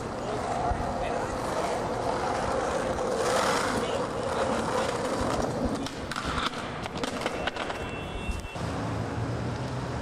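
Skateboard wheels rolling on street asphalt, followed by sharp clacks of the board hitting the pavement about six seconds in and again at about eight and a half seconds.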